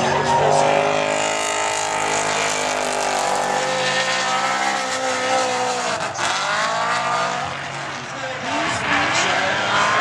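Drift car's engine held at high revs while the car slides with tyre noise, its pitch dipping and climbing again about six seconds in and rising once more near the end.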